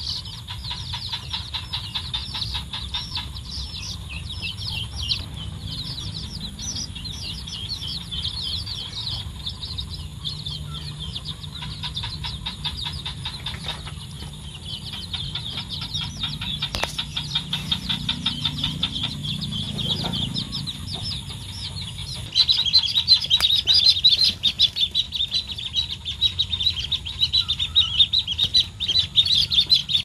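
A brood of baby chicks peeping rapidly and continuously. About two-thirds of the way through, the peeping suddenly becomes louder and denser.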